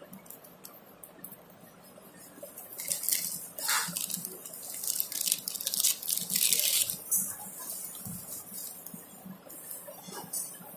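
Small plastic zip-lock seed packet crinkling and rustling as fingers handle it, in a burst of crackles from about three to seven seconds in.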